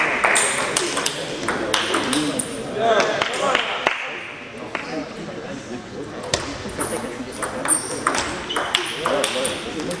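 Table tennis ball clicking off the table and the players' paddles in quick, irregular strokes during rallies, with voices talking in the background.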